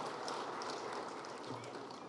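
Faint, steady hall ambience during a pause between words, with a few light clicks.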